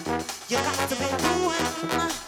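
New Orleans second-line brass band playing an instrumental passage, trombones and trumpet to the fore over a drum kit, with a brief drop in the band about a third of a second in.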